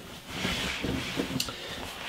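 Hands handling a stiff raw denim jacket: the fabric rustling and brushing, with one small click about a second and a half in.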